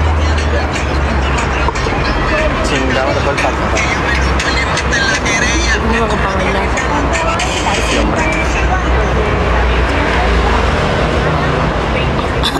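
City street traffic: a steady low engine rumble from nearby vehicles, with indistinct voices in the background.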